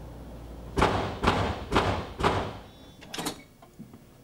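Banging on a hotel room door: four loud knocks about half a second apart, then a quicker, softer double knock.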